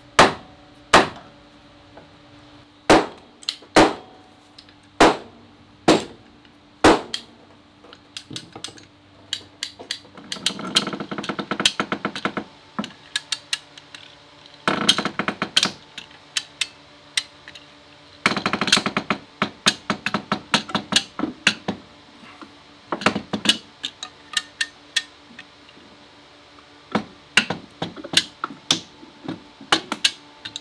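Hammer blows on the clamps holding an oak hull plank: sharp knocks, about one a second, in the first few seconds. From about ten seconds in come several bursts of rapid clicking and rattling as the plank clamps are levered tighter, with scattered knocks between them.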